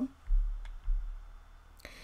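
Two soft, low clicks about half a second apart, a computer mouse being clicked to advance the presentation slide.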